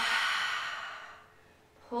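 A woman's long audible exhale through the open mouth: a breathy hiss that fades away over about a second and a half.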